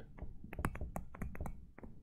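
A stylus tapping and clicking against a tablet screen while a word is handwritten: a quick, irregular series of light clicks.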